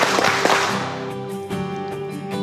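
Background music with steady sustained notes. A loud noisy burst hits at the start and fades away over about a second.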